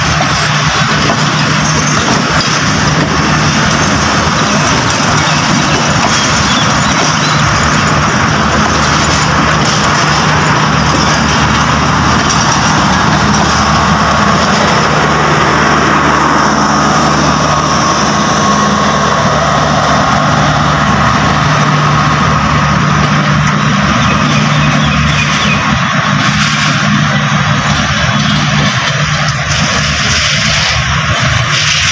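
Passenger coaches of a departing express train rolling past at close range, a steady rumble of wheels on rail with a constant low hum.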